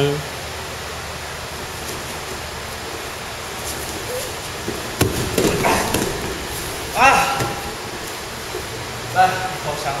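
Two men wrestling on a plastic-sheeted mat: a steady background hiss, then about five seconds in a sudden thud as they go down onto the mat, followed by about a second of scuffling and rustling of the plastic sheet. A short vocal sound follows about two seconds later.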